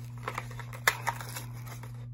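Foil wrapper of a Yu-Gi-Oh booster pack crinkling as it is handled and torn open by hand, with a sharp crackle a little under a second in.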